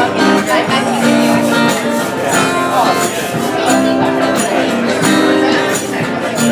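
Live acoustic guitar strummed steadily, with a woman singing over it.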